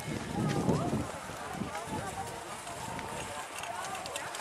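Muffled hoofbeats of a pair of ponies trotting on snow as they pull a sleigh, with a voice talking over them in the first second.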